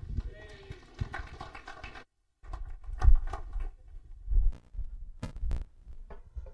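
Irregular low thumps and knocks of a microphone being handled on a stage. The sound cuts out completely for a moment about two seconds in, and there are two sharp clicks near the end.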